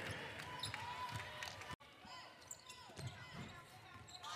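Faint basketball court sound: a ball dribbling on a hardwood floor and sneakers squeaking in short rising and falling chirps. The sound breaks off sharply for an instant a little before halfway.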